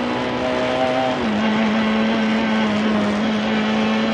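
Lada 21074 rally car's four-cylinder engine heard from inside the cabin, running at a steady high pitch that dips slightly about a second in, under a constant rush of road noise.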